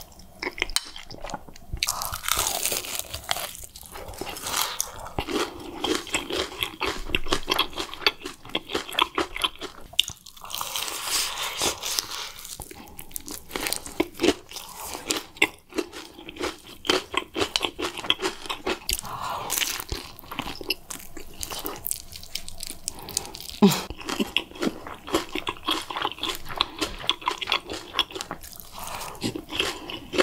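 Close-miked eating of spicy instant noodles and sauced fried chicken: slurps of noodles and steady crunching and wet chewing, with dense crackly mouth sounds throughout.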